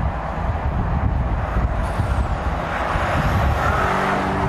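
Audi Q8 TFSI e plug-in hybrid SUV driving along at speed: a steady rumble of the moving car on the road, with the hiss rising a little near the end.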